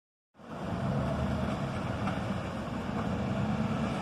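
Steady low rumble of idling vehicle engines.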